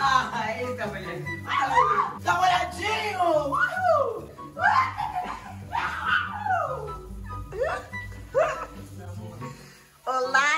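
Boys yelping and shrieking in short cries that swoop up and down in pitch as the shower water sprays over them, over background music with a steady low beat.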